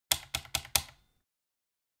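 Four sharp clicks in quick succession, about a fifth of a second apart, in the first second.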